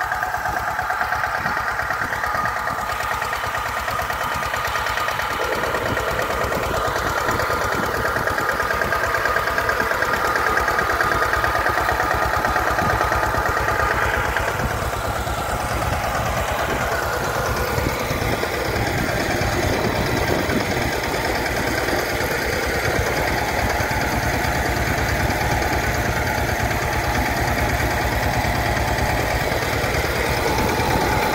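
Mini tractor's engine running steadily as the tractor drives along the crop rows pulling a spray boom.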